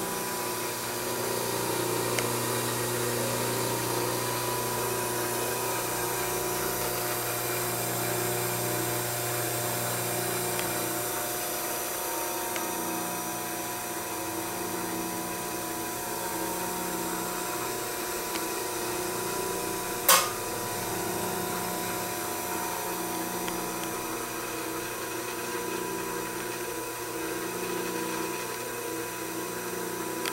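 Restored Rockwell Delta pedestal grinder running, its single-phase motor giving a steady hum and whine, with a low tone that swells and fades every couple of seconds. One sharp click about twenty seconds in.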